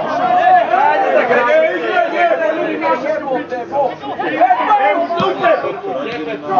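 Several men shouting and calling out over one another, loud and continuous, as the players call during open play on a football pitch.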